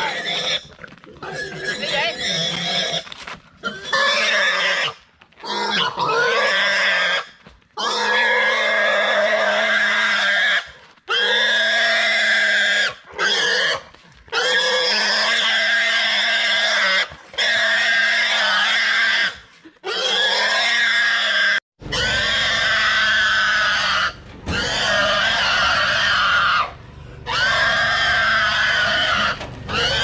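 A large, fat domestic pig screaming in long, loud squeals, one after another with short breaks for breath, in distress at being restrained and forced back onto a truck.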